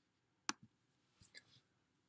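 Computer mouse clicking: one sharp click about half a second in, then three much fainter clicks.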